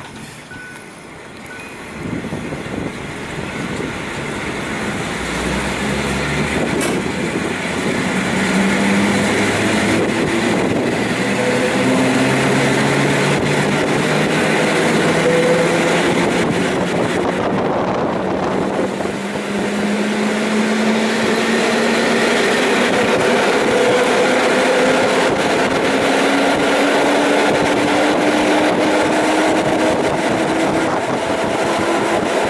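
EN57 electric multiple unit running along the line, heard from on board: rail and running noise, and a motor whine whose tones climb slowly in pitch as the train gains speed. It grows louder over the first several seconds and then holds steady.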